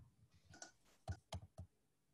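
Near silence with four faint, short clicks in quick succession.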